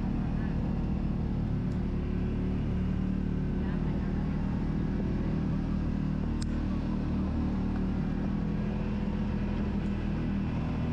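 Side-by-side UTV engine running steadily at trail speed, with tyre and gravel noise. A single sharp tick comes about six and a half seconds in.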